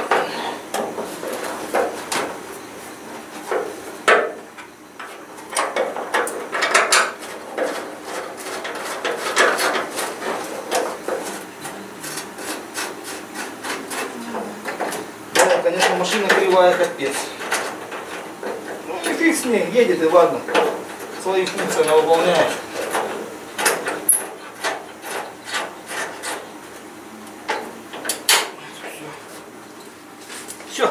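Irregular metallic clicks, knocks and scraping as a car bonnet is set onto its hinges and fastened by hand, with no engine running.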